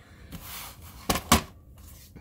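Stack of scrapbook paper and cardstock sliding and rustling over a wooden tabletop, then two sharp taps about a second in as the stack is set down, the second the louder.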